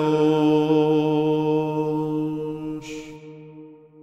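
Byzantine chant: the final note of a hymn held by the chanting voice over a steady low drone, fading out about three seconds in with a soft hiss.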